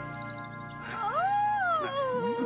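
Music with a held note, then a high voice-like wail that rises steeply about a second in, holds, and slides back down near the end.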